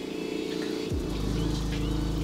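A pressure washer running steadily in the background, a droning machine hum; about a second in a deeper, louder low hum sets in and holds.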